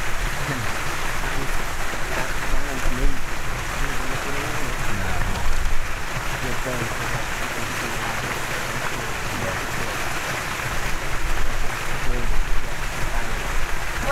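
Wind blowing across the microphone outdoors: a steady rushing noise with an uneven low rumble from gusts hitting the mic.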